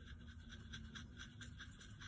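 Faint, quick, repeated scratchy strokes of a small paintbrush mixing a dot of black paint into orange paint in a plastic palette well.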